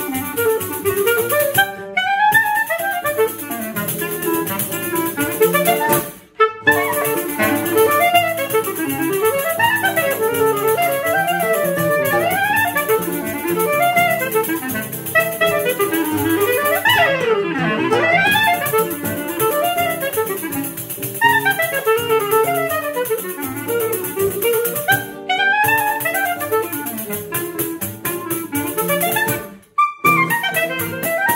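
Choro trio playing a very fast waltz: clarinet running quick melody lines over seven-string guitar and pandeiro, with a few brief stops where the music breaks off for a moment.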